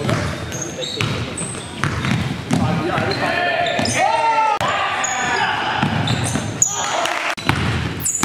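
Live basketball game sound in an echoing gym: a ball dribbling and sneakers squeaking in short high chirps on the court, with players' voices calling out, loudest a little past the middle.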